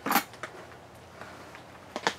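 A short scuffing noise right at the start, a couple of faint clicks about half a second in, then quiet room tone.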